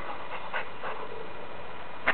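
A dog panting, a few short breaths in the first second or so, then quiet breathing under a steady background hiss.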